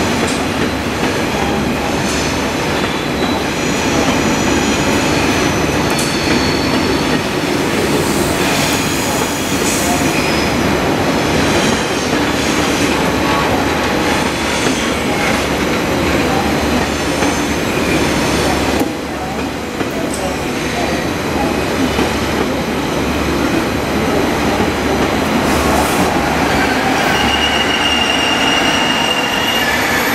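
A pair of coupled TGV trainsets rolling past at close range: a steady rumble of wheels on rail, with thin high wheel squeals coming and going and a longer squeal tone near the end.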